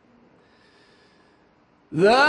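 Faint room hush, then right at the end a man's voice starts a loud chanted note that slides up in pitch and holds: the opening of Arabic religious chanting in a mosque.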